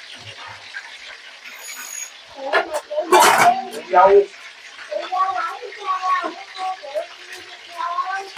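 Sliced white radish tipped into a pot of broth, with a sharp clatter and splash about three seconds in. Indistinct higher-pitched voices talk in the background from then on.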